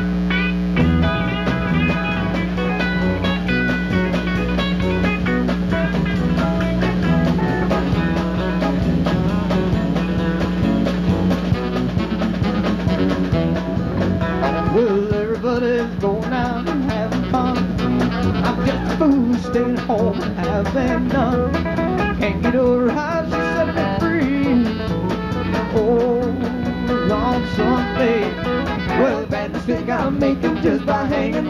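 Live band playing a song, with electric guitar and drum kit to the fore.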